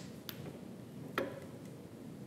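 Hand-lever hot foil stamping press working: three short, light clicks, the loudest about a second in, as the heated type is brought down to press the foil onto the cloth cover.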